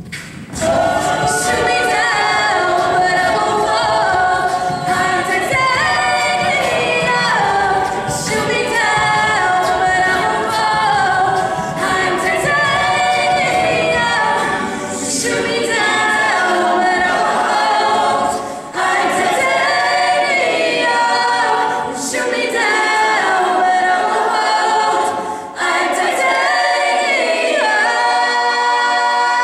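Mixed-voice collegiate a cappella group singing into microphones, with men's and women's voices in harmony and no instruments. The singing is loud and unbroken, dipping briefly twice in the second half.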